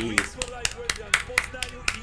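Hands clapping in applause, close and sharp, about four claps a second, with faint voices underneath.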